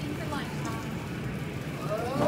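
Background voices over a steady low hum of shop noise, with no clear nearby speech.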